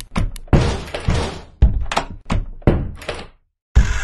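A quick series of heavy thuds and knocks, a few a second, each ringing briefly, with a short silent break near the end before the next hit.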